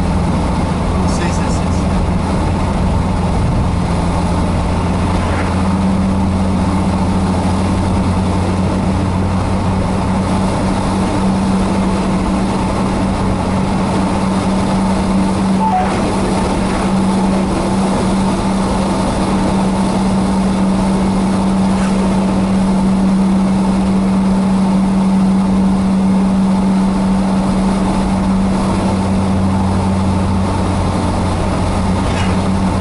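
Engine and road noise of a car cruising on a highway, heard from inside the cabin: a steady drone with a low hum that steps up slightly in pitch about five seconds in.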